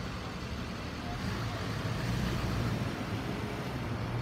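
Passing street traffic: a car and then a pickup truck driving by, a steady low engine and tyre rumble.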